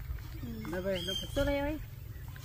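Indistinct human voices, two short stretches of talking or calling with no clear words, over a steady low background rumble.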